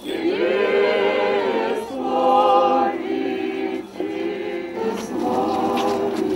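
Several voices singing an Orthodox Easter chant together, in sustained phrases of about two seconds each with short breaths between them.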